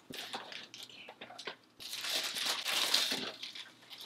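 Cardboard box and plastic packaging being handled as a gown is unpacked: scattered crinkles and rustles, then a louder crinkling rustle lasting about a second and a half, starting about two seconds in, as the dress is pulled out.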